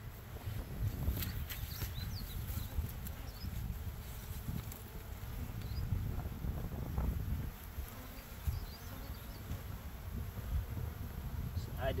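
Honeybees buzzing in the air around two hive entrances, the colony calming after being disturbed, over a low rumble.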